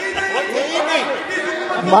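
Several men's voices talking over one another in a large parliamentary chamber: cross-talk among members of the house.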